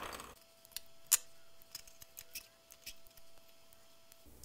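Faint small clicks and wire handling as stranded leads are fitted into Wago lever connectors, with the sharpest click about a second in.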